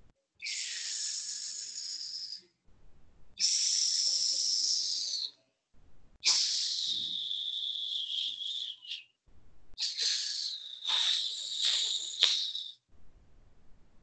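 A person hissing four times, each hiss drawn out for two to three seconds, as a sound effect in a told story; the last two hisses carry a whistling tone that falls slightly.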